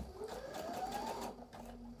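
Brother NQ3700D / NV2700 sewing machine sewing a button on in place with its button-sewing stitch, feed teeth lowered. The motor whine rises in pitch over about the first second, then the sound drops quieter.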